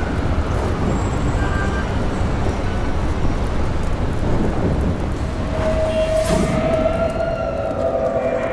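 Film soundtrack sound design: a dense, continuous low rumble with a rain-like hiss, and a sustained tone entering about five and a half seconds in, with a fainter pitch that slowly rises and falls above it.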